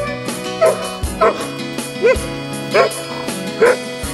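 A dog giving about five short barks, roughly every 0.7 seconds, over background music with a steady beat.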